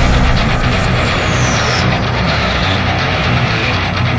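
A pack of racing ATV quads accelerating together off the start line, many engines revving hard at once, with background music running underneath.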